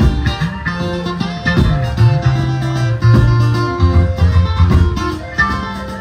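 Live maskandi band music, instrumental: an amplified acoustic guitar picking a quick melody over a bass line that slides between notes.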